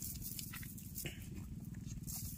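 Faint rustling and light clicks of a nylon cast net being handled as small fish are picked out of it, over a steady low hum.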